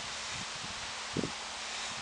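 Steady outdoor hiss of a breeze, with a few soft low thumps of wind on the microphone, the strongest about a second in.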